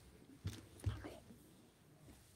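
Quiet whispered voices close to a desk microphone, with two soft low thumps about half a second and one second in as a book is handled on the table.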